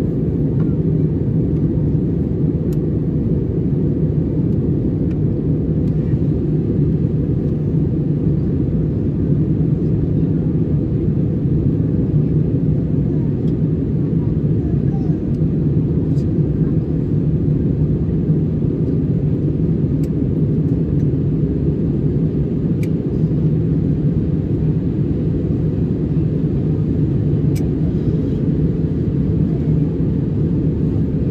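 Steady low rumble of airliner cabin noise in cruise, engines and airflow heard from a window seat inside the cabin, with a few faint ticks over it.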